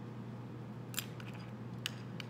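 Two sharp clicks, about a second in and near the end, with a few faint ticks after the first: small clay-working tools being handled on a wooden worktable, over a steady low room hum.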